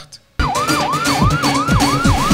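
Siren-like wail in a news programme's transition sting, starting about half a second in: a tone sweeping quickly up and down over and over, with beat-like thuds beneath.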